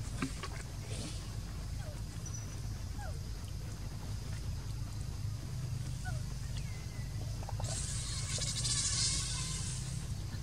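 Outdoor forest ambience: a steady low rumble with a few faint short chirps. A loud, high, fast buzzing starts about two seconds before the end.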